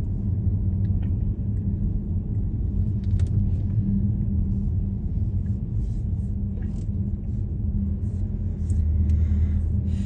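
Steady low rumble of a car's engine and tyres, heard from inside the cabin while driving slowly along a paved road.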